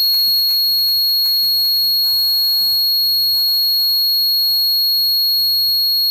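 A loud, steady, high-pitched whistling tone over faint background music, with a sung melody coming in about two seconds in.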